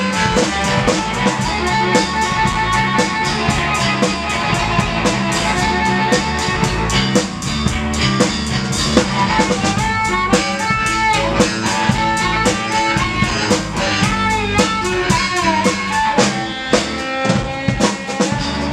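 Live blues band playing an instrumental passage with no vocals: electric guitar lines with bent notes over a steady drum-kit groove.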